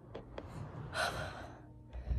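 A boy's single audible breath about a second in, the breathing of someone winded from push-ups, with two faint clicks near the start.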